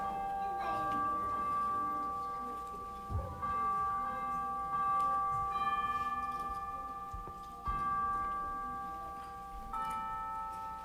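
Tubular-bell chimes playing a slow melody: a new note sounds every second or two, and each rings on and slowly fades under the next.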